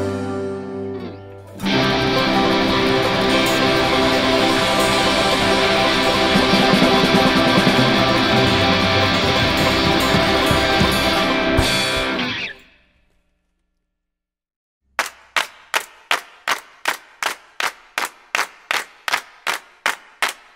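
Instrumental ending of a rock song: a quieter guitar passage, then the full band with electric guitars loud for about ten seconds before fading out into silence. About two seconds later, a run of sharp, evenly spaced strikes begins, about three a second.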